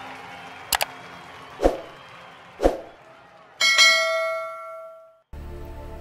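Logo sting sound effect: a quick double click, then two deep hits about a second apart, then a bright bell-like chime that rings and fades out over about a second and a half. A steady music bed starts just before the end.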